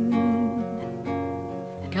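Nylon-string classical guitar strumming chords in a cielito folk accompaniment, heard alone between sung lines; a woman's held sung note fades out about half a second in.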